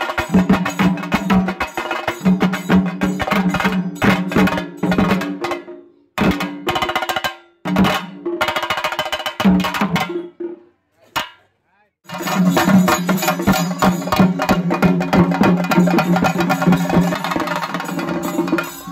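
A chenda melam ensemble of several chenda drums, played with sticks in fast, dense rolling strokes. The playing breaks off in short gaps through the middle and falls nearly silent for a couple of seconds apart from a single stroke. Full playing returns about two-thirds of the way through.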